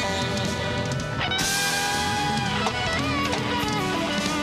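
Live band playing: an electric guitar carries long held notes that bend and waver, starting about a second in, over electric bass and drum kit.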